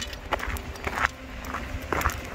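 A few footsteps of a person walking with a camera, short irregular knocks over a low rumble of movement on the microphone.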